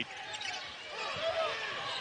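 Basketball arena ambience during live play: a steady crowd murmur with a few faint short squeaks from the court.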